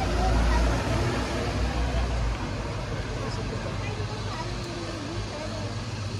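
Street ambience: a passing motor vehicle's low rumble, loudest in the first two seconds and then easing off, with people talking indistinctly nearby.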